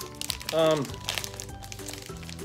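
Candy bar wrappers crinkling as two people pull them open, under steady background music, with a short spoken "um" about half a second in.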